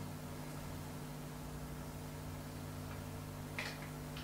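Quiet meeting-room tone with a steady low hum and faint hiss; a brief faint sound near the end.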